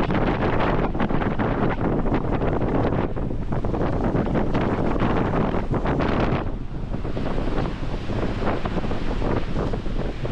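Strong wind buffeting the microphone, with surf breaking underneath. The gusts ease briefly about two-thirds of the way through, then pick up again.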